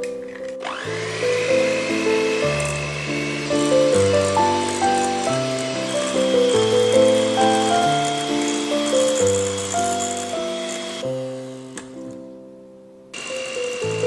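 Light instrumental background music over an electric hand mixer beating eggs and sugar. The mixer's motor whine rises as it spins up about a second in, holds steady, and cuts out near the end. The sound starts again abruptly just before the end.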